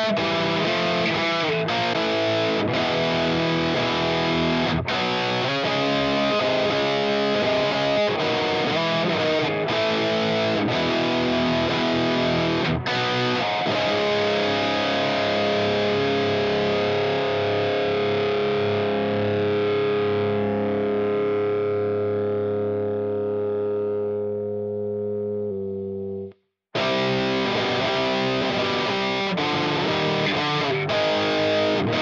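Heavily distorted electric guitar riff played back from a looper through a Digitech Drop Tune pitch-shifting pedal into an Axe-FX III high-gain amp model, with chugged chords. About halfway through, a chord is left ringing and slowly fades, the sound cuts out briefly, and the riff starts over near the end as the loop repeats.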